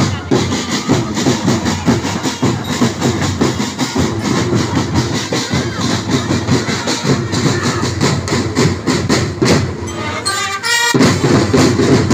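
Marching drum band of bass drums and snare drums playing a fast, steady street-parade beat. About ten seconds in, the drums break off for a second under a brief high repeated figure, then come back in.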